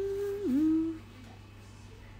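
A woman humming with closed lips: one held note, then a quick dip onto a slightly lower held note, ending about a second in.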